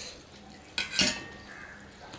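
Stainless steel bowl clinking against a steel dinner plate: two sharp metal clinks in quick succession about a second in, the second louder and ringing briefly.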